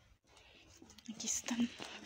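Faint, hushed voices speaking, starting about a second in.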